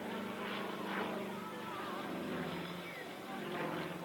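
A Yak-55's nine-cylinder Vedeneyev M-14P radial engine and propeller running at display power overhead, a steady drone whose pitch drops a little about two seconds in.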